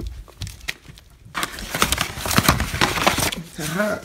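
Paper rustling and crinkling as printed tickets are picked up and handled, dense and crackly for about two seconds in the middle.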